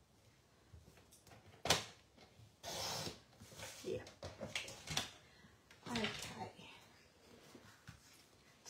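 Paper trimmer cutting cardstock: a sharp click as the cover is pressed down, then a short scraping swish as the blade is run along the track. Light rustling of card being handled follows.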